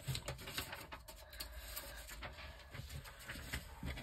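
Faint handling sounds: a sheet of lined paper being picked up and laid on a wooden table, with a few light taps and rustles.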